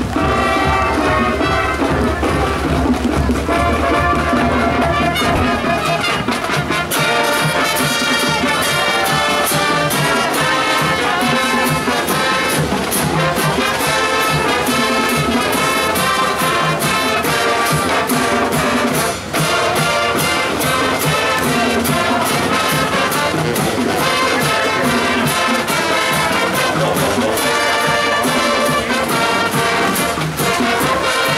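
High school marching band playing on the field: a full brass section carrying the tune over a drum line keeping a steady beat.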